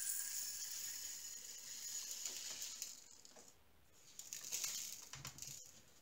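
Faint rustle of a small plastic baggie and patter of tiny resin diamond-painting drills being poured into a drill tray. It runs for about three seconds, pauses, and comes back briefly near the end.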